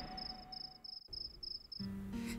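Crickets chirping in an even rhythm, about four short high chirps a second, as the tail of a music cue fades out; a low steady music tone comes in near the end.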